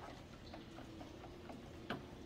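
A serving robot rolling a baby stroller across a concrete floor: faint, irregular ticking and clicking a few times a second over a low steady hum, with one sharper click near the end.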